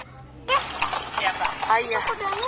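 Horse's hooves clip-clopping on a paved street as a delman horse carriage moves along, in sharp, irregular clicks. The clicks start about half a second in, mixed with people's voices.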